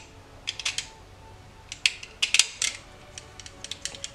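Stanley knife blade nicking and scraping at the cut end of a green rowan twig as the soft pith is dug out to form the ink well: short, crisp clicks and scrapes in a few quick clusters.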